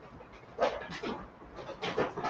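Dry-erase marker writing on a whiteboard: a few short, scratchy strokes about half a second apart.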